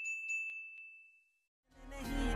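Notification-bell 'ding' sound effect for a subscribe animation: one high ringing tone that fades out over about a second and a half, with a few light clicks. Music starts to fade in near the end.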